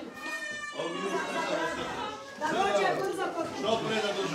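Several people's voices talking over one another, with no single clear speaker.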